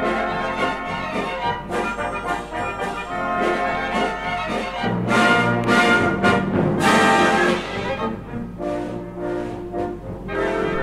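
Symphony orchestra playing a fandango, with the brass to the fore, building to its loudest, most strongly accented passage about five to seven seconds in.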